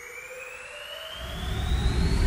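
Synth risers building tension in a future bass build-up: a rushing noise sweep with tones gliding steadily upward, getting louder, with a deep rumble swelling in about halfway through.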